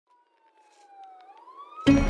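A faint siren-like wailing tone fading in, sliding down in pitch and then rising again. Just before the end, loud music cuts in.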